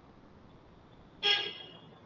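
A single short, horn-like toot about a second in, with a sudden start, dying away within about half a second.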